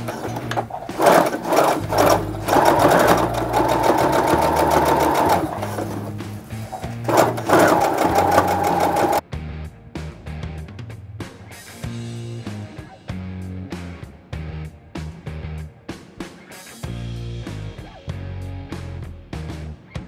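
Electric sewing machine running in bursts, its needle rattling rapidly as it stitches mesh netting, then stopping abruptly about nine seconds in. Background music with a beat plays throughout.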